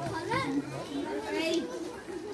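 Children's voices chattering and calling out, with people talking in the background.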